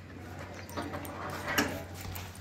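A dog whining briefly, a pitched sound lasting about a second and starting partway in.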